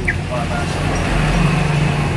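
Motorcycle engine idling with a steady low hum, with faint voices in the background.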